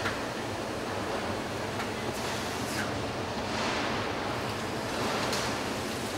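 Steady ambient noise of a car assembly hall, with a few faint taps or clinks from work on the line.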